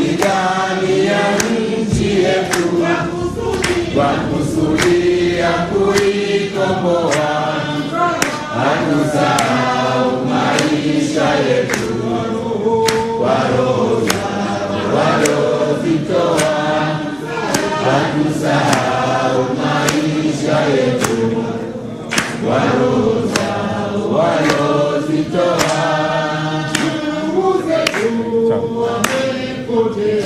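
A hall full of people singing together in chorus, kept in time by steady rhythmic hand clapping.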